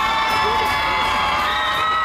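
Crowd cheering and yelling, with several voices holding long shouts.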